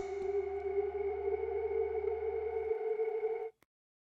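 A sustained electronic drone tone with a low hum beneath it, a dramatic reveal sound effect. The hum drops out about two-thirds of the way through, and the tone cuts off abruptly near the end.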